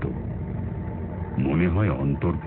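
A steady low droning hum, like a running engine, as a background effect, with a voice speaking briefly about one and a half seconds in.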